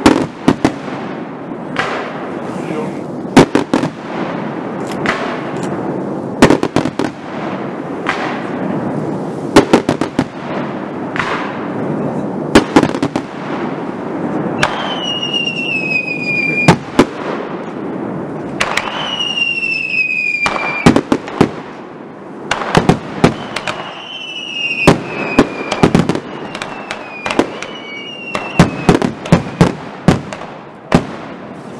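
Fireworks display: a rapid, irregular series of sharp bangs from bursting shells over a steady crackling rumble. From about halfway in, several shrill whistles sound, each falling slightly in pitch over about two seconds.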